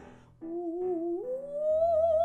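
A woman's voice singing without words in an operatic style, with wide vibrato. After a brief pause she holds a note, then glides up about an octave a little past a second in and holds the high note, over a soft piano accompaniment.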